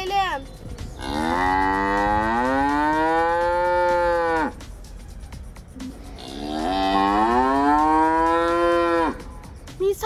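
A cow mooing twice, two long calls that each rise in pitch and then hold steady before stopping; the second is shorter.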